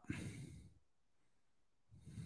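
A man's short sigh, breathing out into a close microphone in the first half-second, then near silence.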